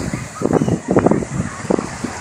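Wind buffeting a phone microphone in uneven gusts, with the voices of a crowded beach behind it.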